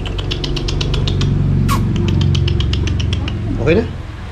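Two rapid runs of phone camera shutter clicks, about ten a second, as photos are taken in bursts, over a steady low hum.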